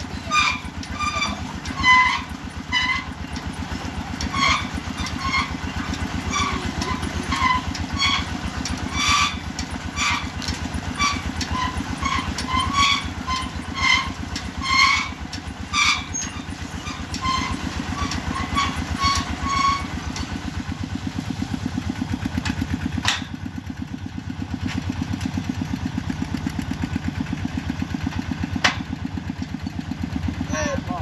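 Engine of a small water-well drilling rig running steadily under load while the bore is drilled. Over the first twenty seconds, short high-pitched squeaks recur about once or twice a second, then stop; two sharp clicks come near the end.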